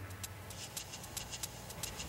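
Faint quick ticking, several ticks a second, over a low steady hum.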